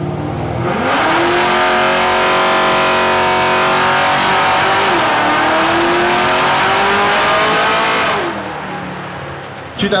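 Car engine at full throttle in a long dyno pull: it rises sharply from idle about half a second in, then climbs steadily in pitch, with a brief dip near the middle like a gear change, before lifting off and winding down about eight seconds in.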